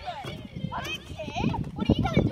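Boys' voices talking and calling out, with a couple of low thuds about a second apart.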